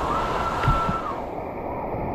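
Water-slide outlets gushing water into a splash pool, heard as a steady rushing and splashing from right at the water's surface, with a faint steady high tone for about the first second.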